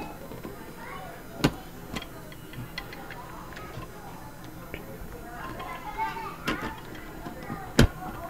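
Sharp metallic clicks and knocks of an Alarm Lock Trilogy lever lock's brass hub and cam parts being worked into the lock housing by hand: a loud click about a second and a half in, a few softer taps, and another loud one just before the end.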